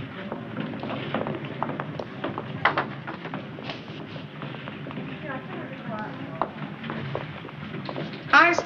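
Indistinct background voices with scattered clicks and knocks throughout, as of people moving about and handling objects.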